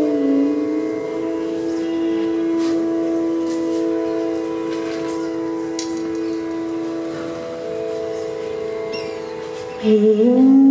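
A steady drone of long held notes under a Hindustani bansuri alap, one note sustained almost unbroken with its overtones, with a few faint clicks. Right at the end a new bamboo flute phrase slides in and gets louder.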